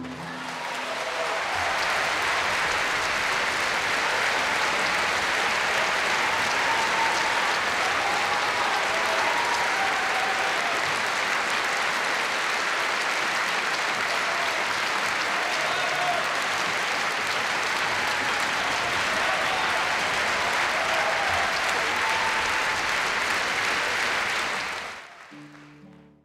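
Audience applauding steadily, with a few voices calling out in the crowd; the applause fades out near the end.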